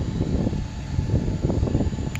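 Wind buffeting a phone microphone: an uneven low rumble.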